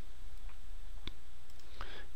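Computer mouse button clicking: one sharp click about a second in, a fainter click before it and a soft short sound near the end, over a low steady hum.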